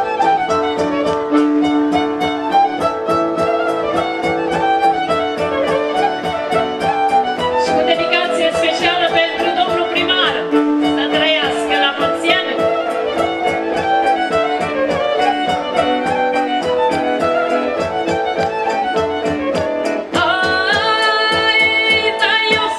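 Romanian folk band playing an instrumental passage led by a violin over steady sustained accompaniment, the violin running high and fast about halfway through. A woman's singing voice comes in near the end.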